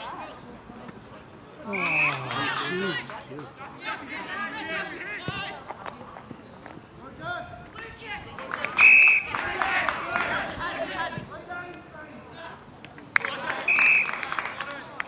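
Indistinct shouting and calling from players and onlookers at an Australian rules football match. An umpire's whistle gives three short blasts: about 2 seconds in, about 9 seconds in (the loudest), and at the very end.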